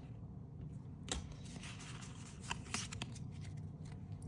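Faint rustle of trading cards being handled and slid in the hands, with a few soft ticks about a second in and again past halfway.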